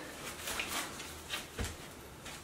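Light handling noise from stretched canvas paintings being picked up from a stack: a few soft knocks and rustles in a small, bare room.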